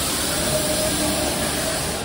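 Loud, steady rushing noise of indoor amusement-park rides and their machinery running, with faint short tones drifting through it.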